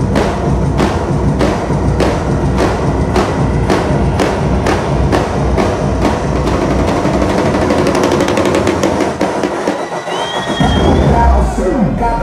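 Loud dance music over a club sound system: a steady kick-drum beat about every 0.6 s that quickens into a drum-roll build-up, then the bass drops out briefly about ten seconds in before the full beat comes back.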